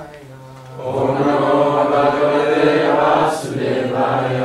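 A group of voices chanting a Sanskrit prayer in unison, answering a lone male voice in call and response. The group comes in about a second in and fades near the end, where the single voice takes up the next line.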